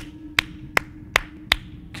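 One person's slow clap: five single hand claps at an even pace, a little under half a second apart, over a faint steady hum.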